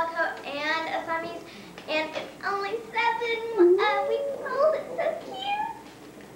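A young child singing in a high voice, holding a few long notes about halfway through, among children's voices.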